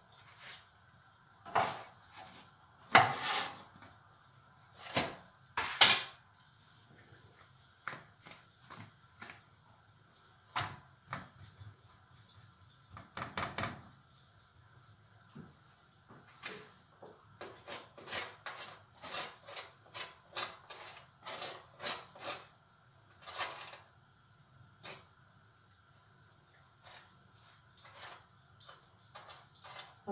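Scattered knocks and clatters of kitchen work at the counter: things being handled, set down and moved. A few louder knocks come in the first six seconds, and a run of quicker, lighter taps comes in the middle.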